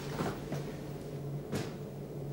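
Steady low electronic hum of a spaceship flight deck, a sound-effect ambience, with two soft clicks, one about a quarter second in and one past halfway, as console controls are worked.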